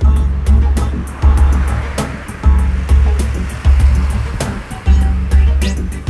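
Background music with a deep, heavy bass beat that repeats about every second and a quarter, with sharp percussion hits over it.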